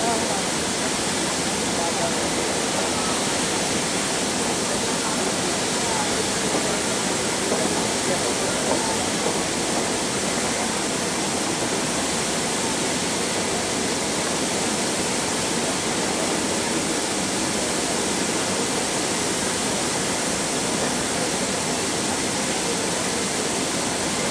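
Steady rushing hiss of the fountain spray that forms the laser projection screen over the bay, with faint voices of people talking underneath.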